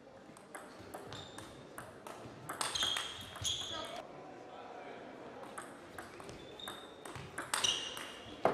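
Table tennis ball clicking in a rally: a quick series of sharp ticks as the celluloid-type ball bounces on the table and is struck by the rubber-faced bats, with hall reverberation.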